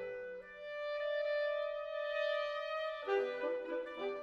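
Mixed woodwind quintet of clarinet, oboe, bassoon, saxophone and bass clarinet playing contemporary classical music. A full held chord dies away and one instrument sustains a single long note. About three seconds in, the ensemble comes back in with quick, shifting notes.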